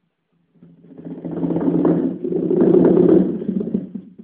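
A rapid drum roll on a drum kit that swells up from silence, peaks and fades away again.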